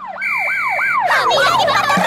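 Cartoon police-car siren sound effect: a quick series of falling swoops, about four a second, with a steady whistle-like tone over the first half.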